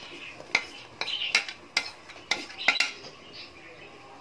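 Utensil clinking and scraping against a ceramic bowl as grated jaggery is knocked out of it into a pot of boiling water: a string of sharp clinks over about two seconds.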